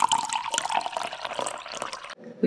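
A stream of liquid running and splashing steadily.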